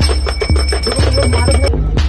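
Background music with a heavy steady beat about twice a second, and a high, rapidly pulsing bell-like ringing over it that stops shortly before the end.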